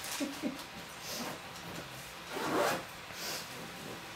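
Soft rustling and scuffing as a baby's hands and knees move over a fleece blanket while he crawls, with a louder shuffle about two and a half seconds in.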